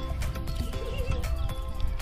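Background music with steady held notes, a brief wavering note about a second in, over a low rumble.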